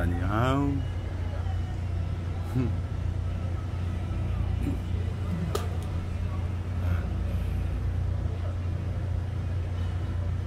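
A steady low mechanical hum, with a single sharp click about five and a half seconds in.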